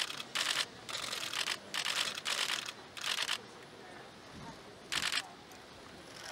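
Press photographers' cameras firing in rapid bursts of shutter clicks, one short burst after another for about three and a half seconds, then a lull and one more burst about five seconds in.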